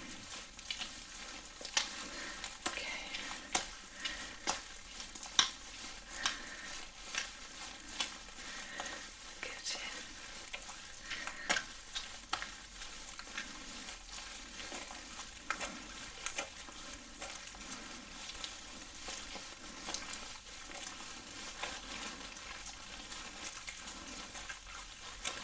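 Close-up wet, sticky crackling of gloved hands rubbing together in a massage, full of irregular sharp clicks and squelches, mixed with the crinkle of a plastic apron.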